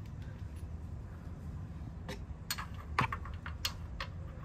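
Several sharp metallic clicks in the second half, from a socket extension, bolt and metal bracket knocking together as the exhaust bracket is fitted, over a steady low hum.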